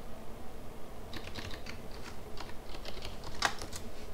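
Computer keyboard keystrokes: a quick run of clicky key presses starting about a second in, with one louder key press near the end.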